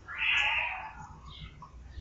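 A single short, high-pitched animal call lasting under a second, soon after the start.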